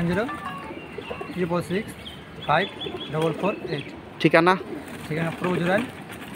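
Domestic pigeons cooing, mixed with people's voices.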